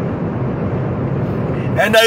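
Steady road and engine noise heard inside a car's cabin while driving, a low even rumble with nothing standing out; a man's voice starts again near the end.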